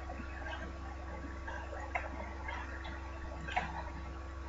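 Faint computer mouse clicks over a steady electrical hum, with a sharper click about two seconds in and another near the end.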